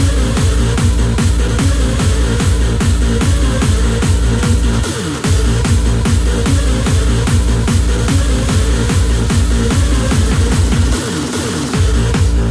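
Hardstyle music from a live DJ set over an arena sound system: a heavy distorted kick drum beating fast and steady under a synth line. The kick cuts out briefly about five seconds in and again for a moment near the end.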